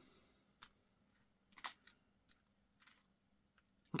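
Near silence, broken by three short, faint clicks as tiny nail-art charms are picked over by hand on a cutting mat; the middle click is the loudest.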